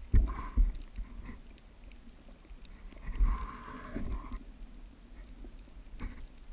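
Muffled underwater sound inside a GoPro waterproof housing: irregular low thumps and water rushing as the pole-mounted camera is moved through the water, with a hiss for about a second around the middle.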